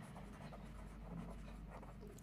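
Faint sound of a pen writing on paper as a couple of words are written out.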